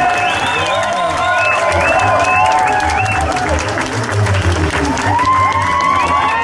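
A room of guests clapping for a couple's grand entrance, over loud music with a steady bass beat.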